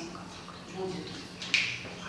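A single sharp click about one and a half seconds in, against faint murmured voices and a steady low hum.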